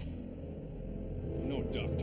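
A low, steady rumbling drone, with a short voice-like sound near the end.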